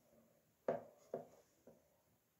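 Small plastic toy bath accessories being handled: a few light taps and clicks, the first a little under a second in and the last, fainter one near the end.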